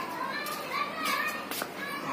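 A series of short, high-pitched voice calls in the background, rising and falling in pitch.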